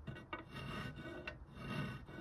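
A few faint strokes of a bastard file across the edge of a negative carrier's opening, filing it out to size.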